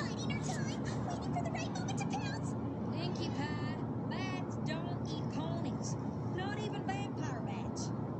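Cartoon vampire fruit bats squeaking and chittering: many short, high-pitched chirps that sweep up and down in quick clusters, over a steady low background.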